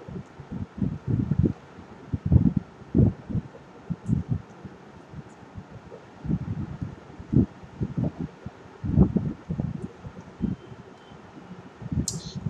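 Irregular soft low thumps and knocks close to the microphone, a dozen or so scattered at uneven intervals, over a faint steady hiss.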